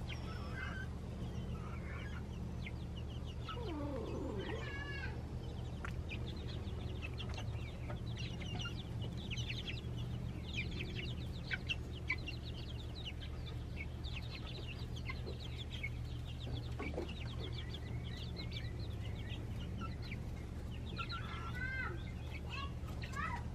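A flock of young chickens cheeping and clucking, with many short, high calls scattered throughout and a few quick rising-and-falling call series. A steady low hum runs underneath.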